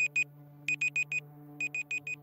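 Digital countdown-timer beeping like an alarm clock: bursts of four quick high beeps, repeating about once a second as the timer counts down.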